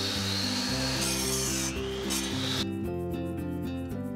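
Compound miter saw cutting through a 2x4 pine board, a steady motor whine over the cutting noise, which stops abruptly a little past halfway. Background music runs underneath.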